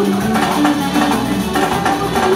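Live band music with a steady percussion beat, drums and wood-block-like clicks, playing an instrumental stretch without singing.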